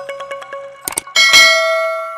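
Subscribe-button animation sound effects: two quick mouse clicks just before a second in, then a bright bell ding for the notification bell that rings on and fades slowly.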